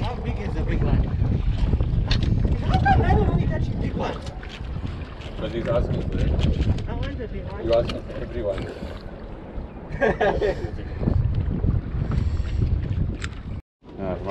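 Gusty wind buffeting the camera microphone in uneven low rushes, with voices here and there.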